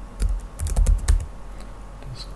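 Computer keyboard typing: a quick run of keystrokes in the first second or so, then a pause.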